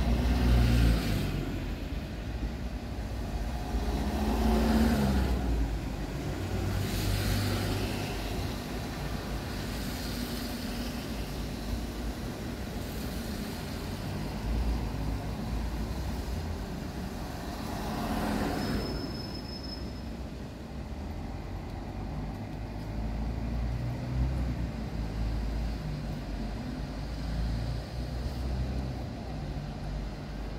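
Street traffic: cars passing one after another every few seconds over a steady low rumble.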